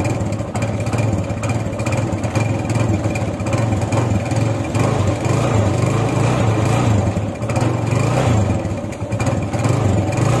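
Kawasaki Barako 175 motorcycle's single-cylinder four-stroke engine idling steadily.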